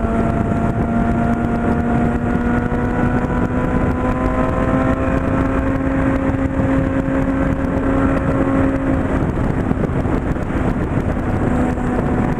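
Honda CB600F Hornet's inline-four engine running at steady highway cruising speed, its pitch creeping up slowly and easing slightly near the end, with wind noise on the microphone.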